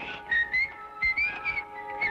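A person whistling a casual tune in short, gliding notes, over soft sustained background music.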